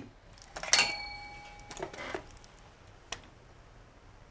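Quiet clicks: one about three-quarters of a second in that rings on with a short, clear tone for about a second, a few faint ticks after it, and one sharp tick about three seconds in.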